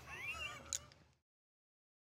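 A faint, high, wavering squeak like a meow, lasting under a second, then dead silence as the sound fades out entirely.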